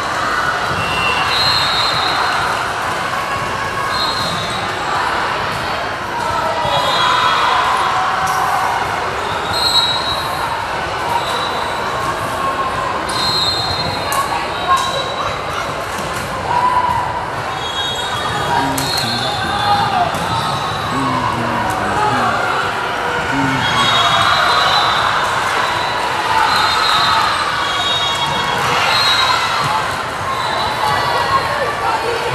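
Gym hubbub in a large hall: many voices chattering, a volleyball bouncing on the hardwood floor now and then, and short high sneaker squeaks.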